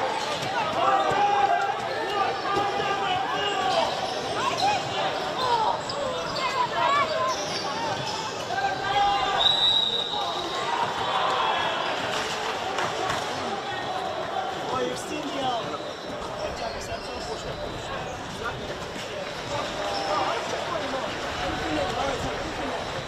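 Pitchside sound of a women's football match: players shouting and calling to one another across the field, with thuds of the ball being struck.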